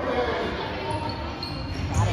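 A basketball being bounced several times on a hardwood gym floor, with voices in the background.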